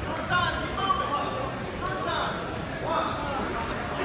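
Indistinct voices of spectators calling out in a large school gymnasium.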